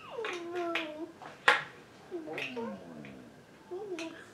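Drawn-out vocal calls sliding down in pitch: one through the first second, then several overlapping between two and three seconds in, with a sharp click about a second and a half in.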